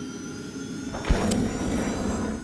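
Intro logo-sting sound effects: a rushing whoosh with a sharp low thump about a second in, followed by a brighter hiss.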